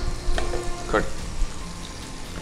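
Food shallow-frying in hot oil in a pan on the stove, a steady sizzle, with two light clicks about half a second and a second in.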